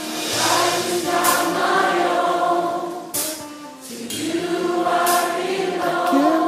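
Gospel choir singing long held, sliding notes over instrumental backing, with bright crashes at the start of phrases, about three times.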